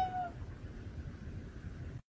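A domestic cat giving one short meow right at the start.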